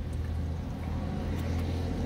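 Steady low hum of a car idling, heard inside its cabin, while a man drinks from a soda can.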